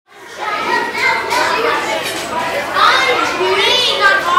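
Several children's voices talking and calling out at once in a loud, steady babble, with one high voice rising and falling near the end.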